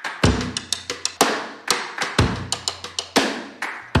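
Background music with a steady drum beat, a deep kick drum about once a second under quicker, sharper hits.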